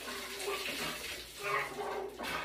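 Chocolate milk pouring from two plastic jugs over a face and splashing down onto the body and into a bathtub, with some muffled vocal sounds mixed in.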